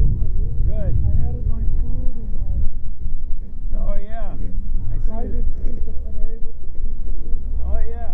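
People talking in the background over a loud, steady low rumble, with voices coming and going.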